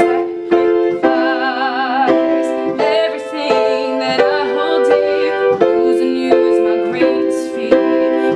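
Upright piano played in repeated chords, with a woman's voice singing held notes with vibrato over it.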